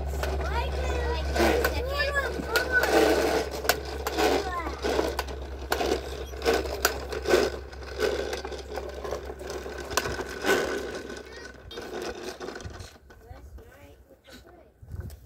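Plastic toy push mower clicking and rattling as it is rolled over patio pavers, with voices in the background. The clatter dies down near the end as the mower stops.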